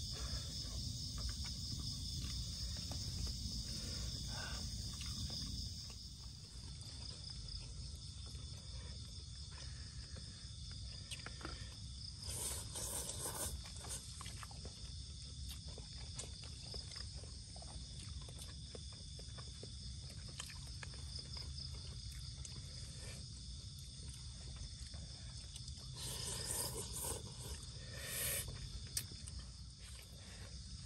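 A steady chorus of night insects keeps up a continuous high chirring. Over it come scattered soft clicks and two short bursts of eating noise, about a third of the way in and near the end, from people eating noodles out of plastic tubs.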